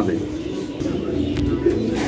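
Racing pigeons cooing, with a sharp click about one and a half seconds in and a low rumble near the end.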